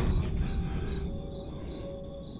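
Heavily amplified room sound in a wooden log building: a low knock or creak of wood right at the start, then a steady hiss with crickets chirping in an even pulse.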